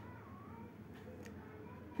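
Quiet room tone with a faint, drawn-out call near the start that slides down in pitch.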